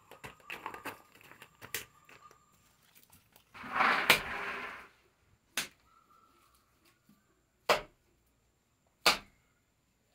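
Wet clay being slapped and pressed by hand onto a mud wall being plastered: a rough smearing noise lasting about a second, then three sharp slaps spaced a second or two apart. Faint clicks come in the first couple of seconds.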